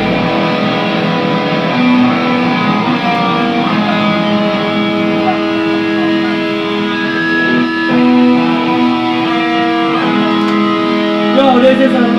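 Electric guitar through an amplifier with long notes left ringing, the held pitches changing every second or two, with no drums playing.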